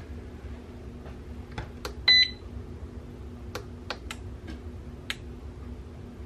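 Digital pressure canner's control panel giving one short high electronic beep about two seconds in, among a few light clicks, over a low steady hum.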